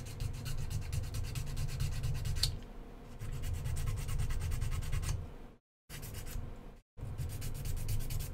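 A small metal file rubs rapidly back and forth against a tiny 3D-printed plastic part, sanding down its inside. The strokes are fast and scratchy at first, then softer, with brief pauses in the second half.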